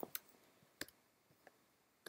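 A few faint, sharp clicks of computer input while the view is zoomed in: two close together at the start, another just under a second in, and a fainter one about a second and a half in, with near silence between.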